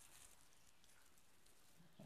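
Near silence: faint room tone with a light rustle of dried herbs being handled, mostly in the first half-second.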